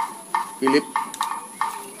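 A pocket lighter being flicked over and over: a quick series of short clicks, about three a second.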